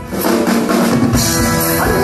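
Live prog rock band playing an instrumental passage between sung lines: drum kit, electric guitars, bass and keyboards. About a second in, the sound grows fuller and brighter.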